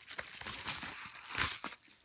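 Padded kraft bubble mailer crinkling and rustling in the hands as it is picked up and turned over, with a louder crinkle about one and a half seconds in.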